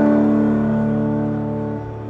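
A held chord from the band's electric guitars, several steady notes ringing together and slowly dying away.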